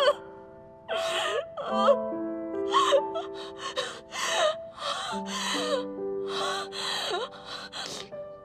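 A woman sobbing in short, gasping bursts with brief wavering cries, over soft background music of slow, held notes.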